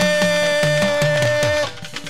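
Fuji music: one long held note over drums whose strokes slide down in pitch, until the music breaks off about 1.7 seconds in.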